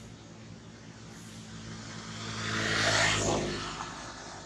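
A motor vehicle driving past. Its sound swells to a peak about three seconds in, then fades with its pitch falling as it goes by.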